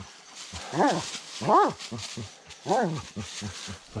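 Blood-trailing dog baying at a downed, wounded buck: three short cries spaced about a second apart, each rising and then falling in pitch.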